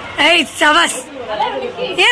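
People talking and chattering in high-pitched voices: short spoken phrases.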